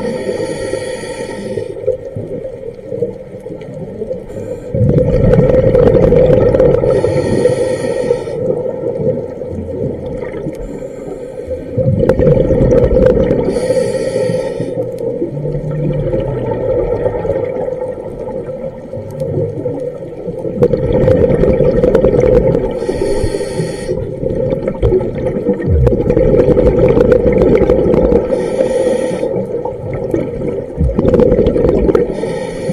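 A scuba diver breathing through a regulator underwater: a short hiss on each inhale and a long burble of exhaled bubbles, five breaths about six seconds apart.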